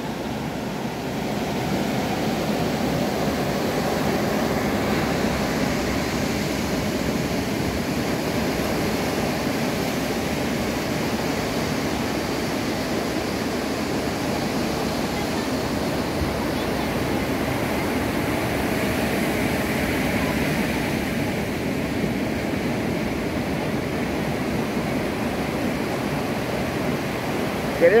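Ocean surf breaking on a beach and washing around pier pilings, a steady wash of waves that swells a little now and then.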